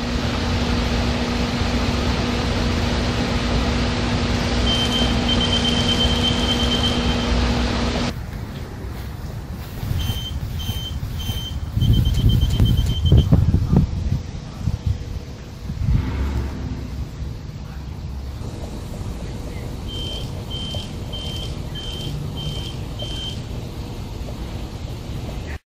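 A sensor cane's obstacle alarm beeping high-pitched, going off when someone is in the cane's path. It gives a fast run of beeps, then spaced beeps about two a second. A steady hum comes first, then wind rumbling on the microphone.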